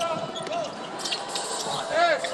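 Live basketball play on a hardwood court in a large hall: the ball being dribbled, with a couple of brief sneaker squeaks, over steady arena background noise.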